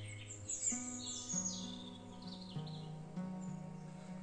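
Soft ambient background music of long held notes that shift pitch slowly, with small birds chirping and singing, a run of quick high falling chirps in the first couple of seconds.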